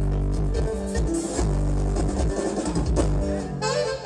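Live norteño band playing dance music at full volume, a melody over a stepping bass line and drums.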